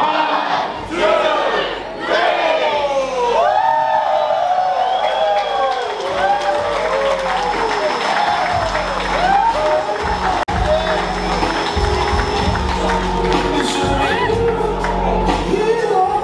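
Crowd of guests cheering and whooping, many voices calling out in rising-and-falling whoops over music; after a brief dropout about ten seconds in, the music with a steady bass carries on under the crowd.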